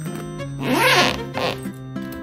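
Zipper on a suitcase's fabric compartment pulled in two strokes, a longer, louder rasp about half a second in and a short one just after, over background music.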